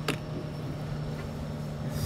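A steady low machine hum holding one pitch, over a low rumble of wind and water, with a single short click at the very start.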